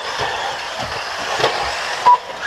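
Radio-controlled buggies running around a dirt race track: a steady noisy wash with a few short low thumps.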